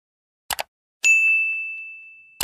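A quick double click sound effect, then a single high bell ding about a second in that rings on and slowly fades: the notification-bell sound effect.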